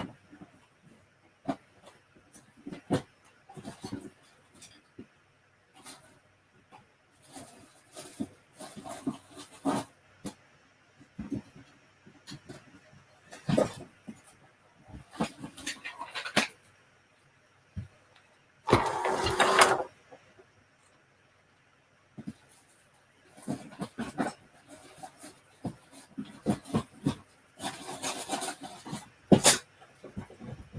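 Wooden spindles knocking and rattling against each other in a basket as it is handled and set down on the table: scattered light clicks and knocks, with a louder rustling scrape a little past halfway and another near the end.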